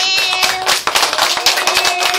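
Applause: many hands clapping quickly and densely, with a steady held tone sounding over the claps.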